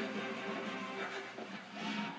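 Background music from a television programme, played through the TV's speakers and picked up from the room.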